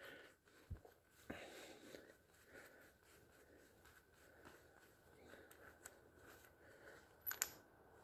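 Near silence with faint handling sounds of gloved hands unscrewing a nut from a threaded ball-joint removal tool. There is a soft knock about a second in, light rustling, and a sharp click near the end.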